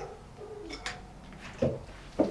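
A bird cooing faintly in the background, with a short, soft low note about one and a half seconds in.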